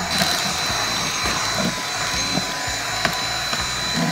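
Dyson V7 cordless vacuum running steadily, with a high whine over the rush of air, as its brush attachment is worked over carpet to pull out cat fur.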